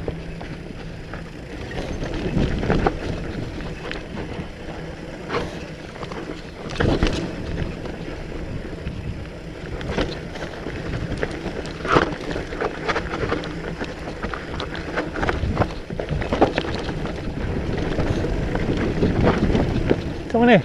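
Mountain bike riding downhill on a dry, rutted dirt singletrack: a steady rush of wind and tyre noise, broken by frequent sharp knocks and rattles from the bike as it goes over rocks and bumps.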